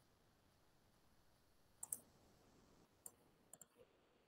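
Near silence with a handful of faint computer-mouse clicks: a quick pair near the middle, then a single click and another quick pair in the last second.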